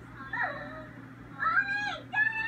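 High-pitched, gliding vocal sounds from a cartoon soundtrack, played through a television speaker: a short one about half a second in, then a longer one that rises and holds near the end.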